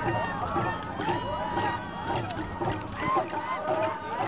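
Many voices calling out and chanting over one another, with scattered sharp knocks among them.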